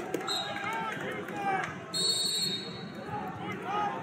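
Busy wrestling-hall background of overlapping voices from coaches and spectators, with a few short, high-pitched steady tones cutting in, the longest about two seconds in.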